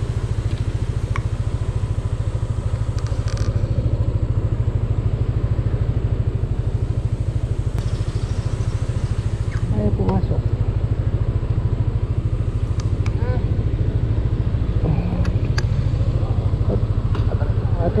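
Yamaha motor scooter engine idling steadily, an even low putter that runs throughout without revving.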